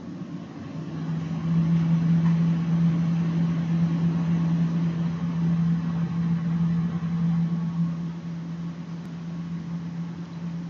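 A steady low mechanical hum that swells over the first second or two and eases off near the end.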